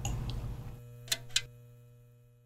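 Neon sign sound effect: a steady electric hum with two sharp clicks about a quarter second apart as the sign switches off, the hum fading away after.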